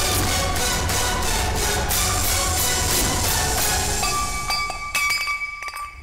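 Dramatic background music with a steady run of percussive strikes; about four seconds in it thins to a few held, high ringing tones punctuated by sharp strikes, and drops away near the end.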